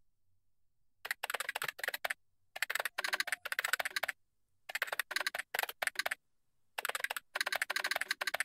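Typing on a computer keyboard: four quick runs of keystrokes with short pauses between them, starting about a second in.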